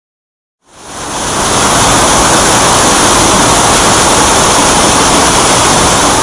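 Steady rush of a waterfall, fading in quickly about half a second in, then loud and even.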